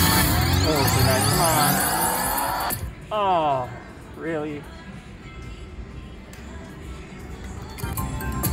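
Wheel of Fortune Gold Spin Deluxe slot machine sound effects. A busy run of electronic gliding tones plays as the reels spin and land, then cuts off sharply about three seconds in. Two short falling jingles follow, then steady casino background until the reels start again near the end.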